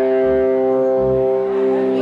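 Live rock band: an amplified electric guitar rings out one long sustained chord, with low bass notes pulsing underneath.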